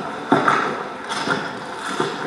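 Footsteps crunching on dry leaves and dirt, a few separate steps, played back over a hall's loudspeakers.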